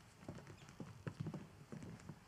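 Footsteps of several people walking across a hard stage floor: faint, irregular knocks, several a second.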